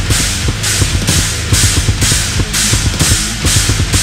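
Metal drum kit played fast and loud along with the recorded song: rapid bass-drum strokes under cymbal hits that recur about twice a second, over a steady low bass line.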